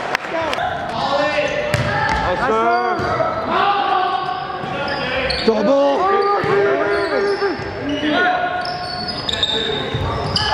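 Sneakers squeaking again and again on a gym floor as volleyball players move about the court, with a sharp hit of the ball about two seconds in, all echoing in a large gym.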